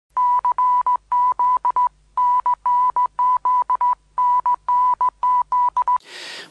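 A loud, high electronic beep tone at one fixed pitch, broken into an irregular string of short and longer beeps with brief gaps and two slightly longer pauses, over a faint low hum.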